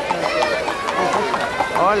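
Several people's voices overlapping outdoors, talking and calling out, with a greeting called near the end.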